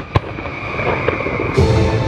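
Fireworks going off: a sharp bang right at the start and a second one a moment later, with music playing underneath.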